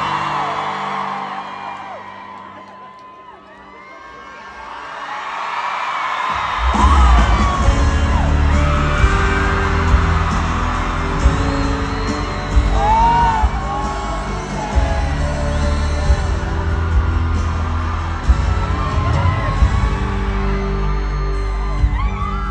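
Live pop-rock band in an arena: crowd screams fade over quiet sustained notes for the first few seconds, then about six and a half seconds in the full band comes in with loud drums and bass, with singing over the top.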